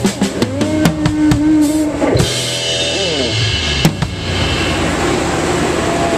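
Live rock band: a drum kit plays fast hits under held guitar and bass notes, then a big crash about two seconds in. Sustained notes slide down in pitch, a last hit falls about four seconds in, and the cymbals ring on, the sound of a song being finished.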